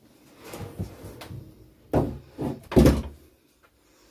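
Handling noises in a small room: soft rustling, then three quick bumps about two to three seconds in, the last the loudest, like a door or cupboard knocking.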